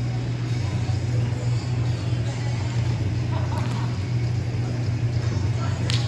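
Ambience of a large indoor sports hall: a steady low hum with faint, distant voices of players, and one sharp smack near the end.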